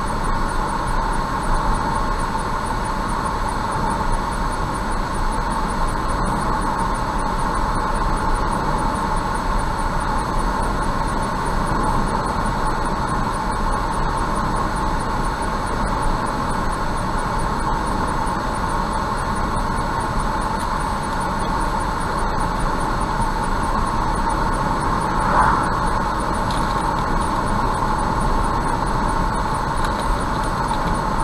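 Steady road and tyre noise with engine hum inside a car cruising at about 70 km/h on a highway, with one brief louder sound near the end.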